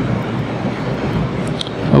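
Steady wash of audience noise in a lecture room, with no single voice standing out.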